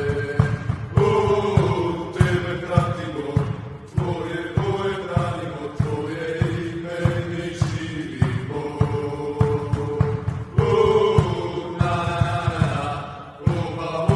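Background music: a song with chanted vocals over a steady beat.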